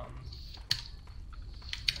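Typing on a computer keyboard: a single sharp key click, a few scattered keystrokes, then a quick run of keystrokes near the end.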